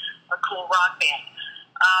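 Speech only: a woman talking in an interview, with a thin, telephone-like sound to the voice.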